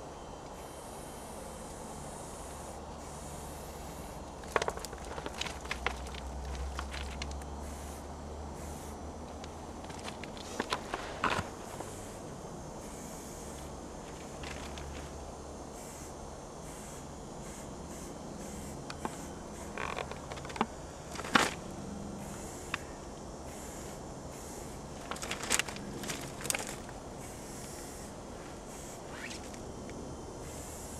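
Aerosol spray paint hissing in short, repeated bursts onto a freight car's side, with scattered clicks and scuffs from the can and shoes on gravel.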